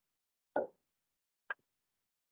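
A pause in speech, silent apart from two brief sounds: a short soft mouth noise about half a second in and a sharp click about a second and a half in.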